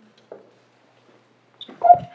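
A microphone being knocked or handled near the end: a sudden, loud knock with a short ringing tone after it, in an otherwise quiet pause.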